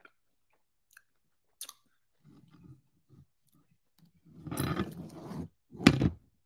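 A person chewing a mouthful of raw honeycomb with soft, wet chewing sounds. About four and a half seconds in comes a louder breathy vocal sound, and a short sharp one right at the end.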